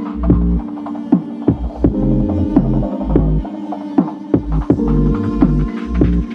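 Electronic background music: a deep pulsing bass line under held tones, with sharp struck notes that dip in pitch a few times a second.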